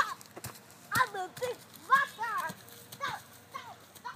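A young child's high voice giving several short wordless cries whose pitch bends and falls, about one a second, with a few sharp knocks near the start.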